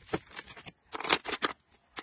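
Plastic-cased makeup pencils and eyeliners clicking and clattering against each other and the sides of a plastic organizer bin as they are put in, in two short runs of clicks, the louder one about a second in.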